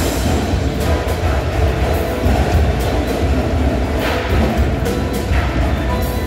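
Indoor percussion ensemble playing a show passage, with front-ensemble percussion and amplified electronics, dominated by a deep, steady low bass, and a few sharp accented hits.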